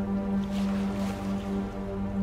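Background music with a held low note and its overtones, steady throughout.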